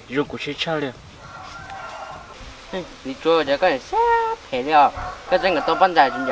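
Speech: a young man talking in Hmong, with a pause of about two seconds near the start.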